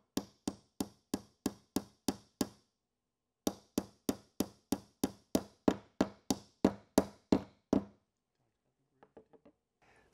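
Hammer driving a small nail at an angle through the end bar of a wooden Langstroth hive frame into its top bar: even blows about three a second, a run of about nine, a short pause, then about fourteen more, with a few faint taps near the end.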